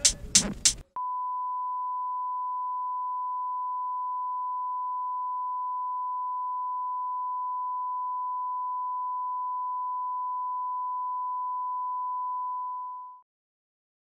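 A single steady, high-pitched test-tone beep, like the tone played with TV colour bars, held unchanged for about twelve seconds and fading out shortly before the end.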